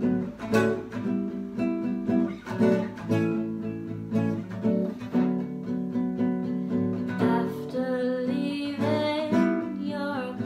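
Acoustic guitar strummed in a steady rhythm of chords.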